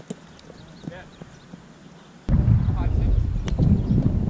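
Sharp slaps of the small rubber ball being hit during a Spikeball (roundnet) rally, three strikes spread over the few seconds. A little over halfway in, a loud low wind rumble on the microphone starts suddenly and becomes the loudest sound.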